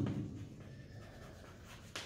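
Chalk scratching faintly on a blackboard as a sentence is written out by hand.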